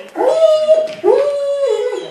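German Shepherd howling: two long howls one after the other, each rising quickly at the start and then held at a steady pitch.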